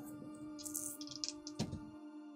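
Quiet background music with long held notes, and a short run of light clicks and clatter about a second in, from dice being rolled.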